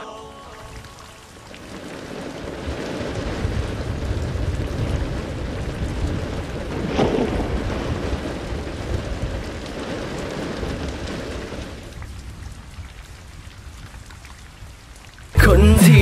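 Rain falling steadily with low thunder rumbling under it, swelling over the first few seconds and fading away after about twelve seconds. Loud music cuts in suddenly just before the end.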